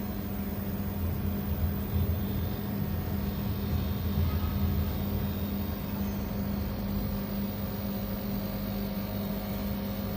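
Dehumidifier running: a steady low hum and whir with one even drone tone, unchanging throughout.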